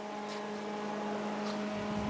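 A steady hum with a faint hiss, slowly growing a little louder.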